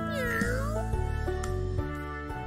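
A cartoon cat's meow: one call, about a second in length, that dips in pitch and rises again, over background music.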